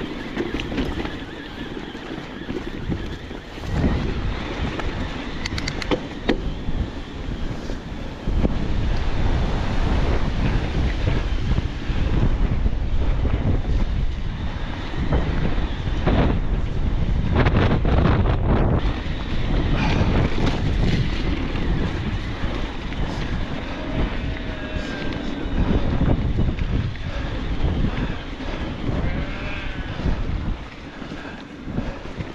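Wind buffeting the camera microphone over the rumble and rattle of an electric mountain bike riding a rough, stony track. It gets louder about eight seconds in and stays loud.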